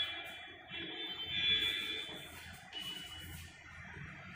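Chalk squeaking on a chalkboard while writing: high-pitched squeals in short stretches, the loudest from about one to two seconds in, with a brief one near the end.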